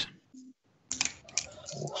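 Typing on a computer keyboard: a quick run of key clicks starting about a second in, after a short silent gap.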